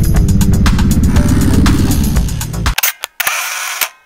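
Electronic background music with a fast, even beat that cuts off abruptly about two-thirds of the way through, followed by a few sharp clicks and a short hissing swoosh, edited-in transition effects.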